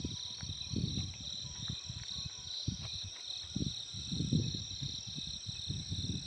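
A steady, high-pitched insect chorus of crickets, with irregular low rumbles under it.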